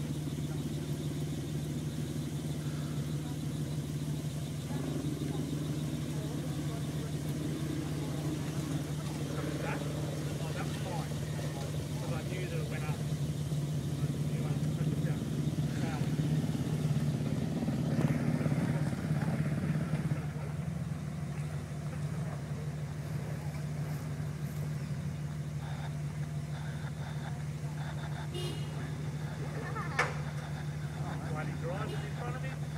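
A 4WD vehicle's engine under load climbing a steep dirt hill, a steady drone that grows louder for several seconds past the middle.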